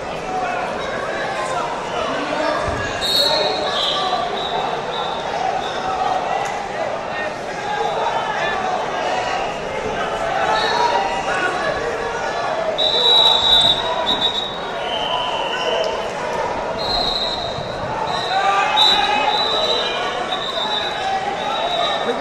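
Echoing hall ambience of a wrestling tournament with many mats: overlapping voices of coaches and spectators, thuds on the mats, and several short high-pitched tones.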